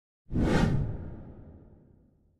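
Video-editing whoosh sound effect with a deep low boom, starting suddenly about a third of a second in and fading away over about two seconds.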